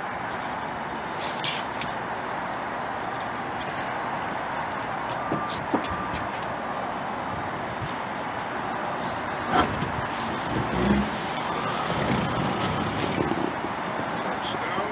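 Steady outdoor city noise, like traffic heard from a rooftop, with a few brief knocks and a low bump near the middle and later on.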